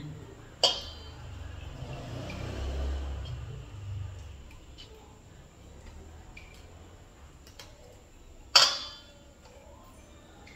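Cream being scraped out of a tin can into a stainless steel bowl with a spatula, with soft handling noise and two sharp metallic clinks, the louder one near the end.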